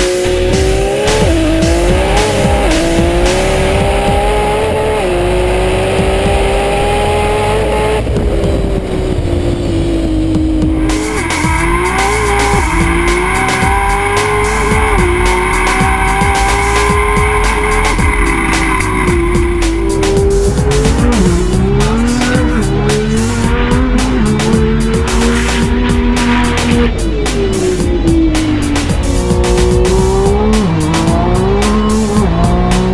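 High-performance car engines accelerating hard through the gears, the pitch climbing and then dropping back at each upshift, several times over. Music runs underneath.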